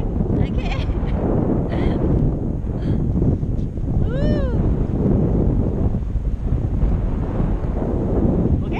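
Steady rushing wind buffeting the microphone of a camera carried in flight on a tandem paraglider. About four seconds in, a person gives one short, high exclamation that rises and falls in pitch.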